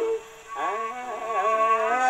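A 78 rpm shellac record of a 1950s Japanese popular song playing acoustically through the soundbox of a US Army phonograph with a steel needle. A held sung note breaks off at the start, there is a short dip, and then the music goes on with sliding, wavering notes.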